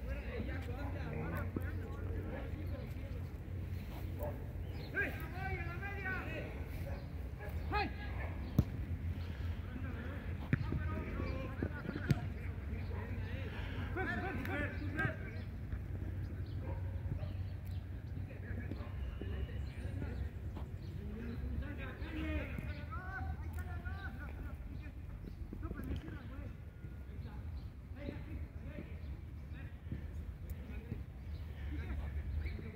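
Distant shouts of footballers across the pitch, with a few sharp thuds of the ball being kicked, over a steady low rumble.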